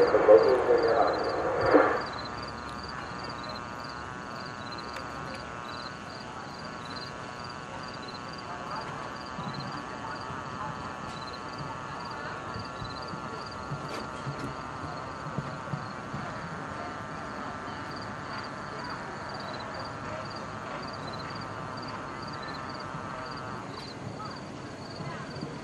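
A man's voice over a public-address system for the first two seconds, then a steady outdoor background with a faint, regular high chirping, roughly two and a half chirps a second.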